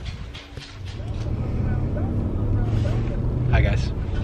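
Steady low rumble of a car under way, heard from inside the cabin, starting about half a second in, with faint voices and a brief spoken word near the end.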